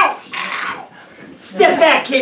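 A reader's wordless vocal sound effect: a breathy hiss, then a short, loud, strained growl-like cry about one and a half seconds in.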